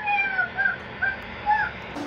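A cat meowing, four short calls in quick succession, the first one longer and falling in pitch. It is heard through a baby monitor's recording, which sounds thin and cut off at the top.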